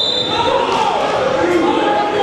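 Many overlapping voices of spectators and coaches calling out and talking in a large gym hall, with a few dull thuds among them.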